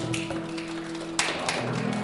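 Final chord of an acoustic guitar and steel guitar ringing out and slowly fading, with a few sharp taps about a second in and near the end.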